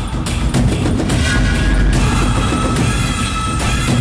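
Loud dramatic background score with repeated heavy drum hits and a held high tone that comes in about a second in.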